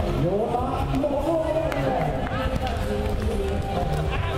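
Excited speech over background music, with crowd noise, the voice rising sharply in pitch at the start.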